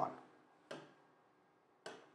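Two light taps of a stylus on an interactive whiteboard screen, a little over a second apart, as the pen tool is selected and its colour palette opened.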